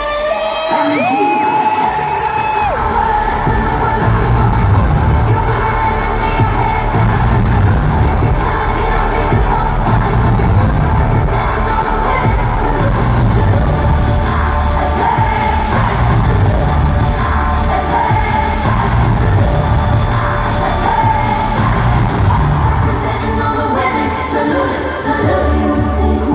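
Live pop music with a heavy bass beat played through a loud arena sound system, recorded from among the audience, with the crowd cheering and a long high held voice near the start.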